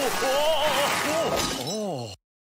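A Pingu penguin character's gibberish voice, a few short calls that rise and fall in pitch, with a loud hissing, crash-like noise under the first second and a half. The sound starts and stops abruptly, as a cut-in clip.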